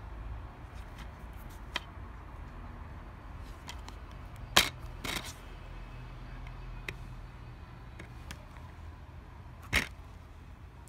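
Plastic DVD case being handled and opened, giving a few sharp plastic clicks over a low handling rumble. The loudest click comes about four and a half seconds in, followed closely by a second, and another strong click falls near the end.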